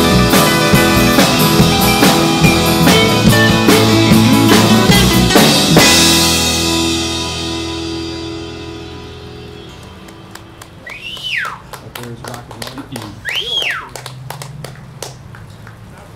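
A live acoustic-guitar band ends a song on a last strummed chord that rings out and fades over a few seconds. A light scatter of claps follows, with two rising-then-falling whistles.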